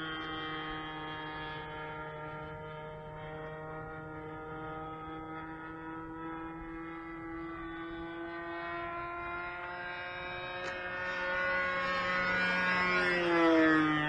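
O.S. Max .50 two-stroke glow engine of a radio-controlled Extra 300S model plane running steadily in flight overhead, a thin buzzing note that sags slightly in pitch; the pilot says it seems underpowered. Over the last few seconds it grows louder and its pitch dips as the plane swoops.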